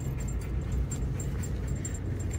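Car cabin noise while driving: a steady low road and engine rumble, with a faint light jingling ticking through it.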